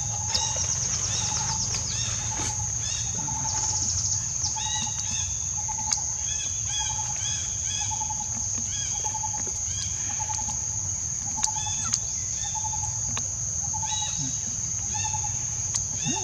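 Forest ambience: a steady high insect drone, over which a bird repeats a short low note at an even pace, a little more than once a second, while other birds chirp in quick clusters. A few sharp clicks stand out.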